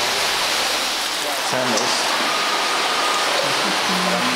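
Steady rush of running water, with people's voices faintly heard beneath it.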